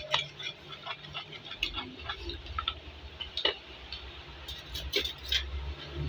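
Metal fork clinking and scraping against a ceramic bowl while mixing egg and flour into tempura batter, in irregular taps with a cluster of louder clinks about five seconds in. A low steady hum runs underneath.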